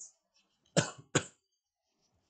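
A man coughing twice in quick succession, two short, loud coughs near the middle.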